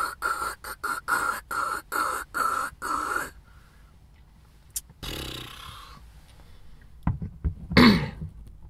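A man's voice making a quick run of short, rhythmic vocal noises, about three a second, for the first three seconds. After a pause comes a breathy hiss, and near the end a few knocks from the camera being handled.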